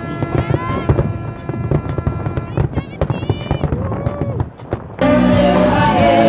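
Fireworks popping and crackling, with music and voices behind them. About five seconds in it cuts suddenly to a much louder live rock band with singing.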